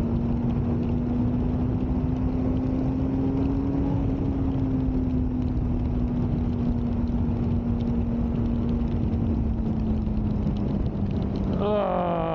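Suzuki GSX-R 600 K9's inline-four engine pulling at a steady cruise on a wet road, its note rising slightly over the first few seconds and then slowly easing off, over a steady rush of wind and road noise.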